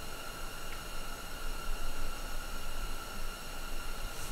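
Steady hiss of workshop room tone, with a few faint, steady high-pitched tones running through it.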